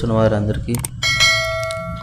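Sound effect of a subscribe-button overlay: a couple of mouse clicks, then a bell chime about a second in, its several ringing tones fading over about a second and a half.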